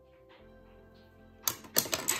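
Faint steady background music, then a quick run of sharp clicks and knocks near the end, from hard objects being handled on the desk.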